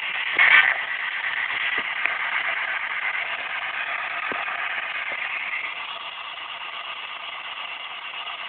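P-SB7 spirit box sweeping through the FM band, giving a steady hiss of radio static with a brief louder burst about half a second in and a few faint clicks.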